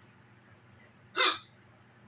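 A man's single sharp hiccup about a second in, one of a bout of hiccups that he puts down to drinking soda too fast.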